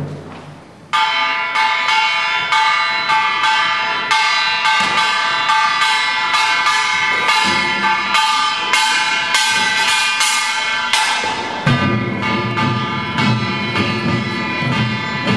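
Korean pungmul percussion: a small brass gong (kkwaenggwari) rings out with quick, steady strokes, starting about a second in. Drums join near the end.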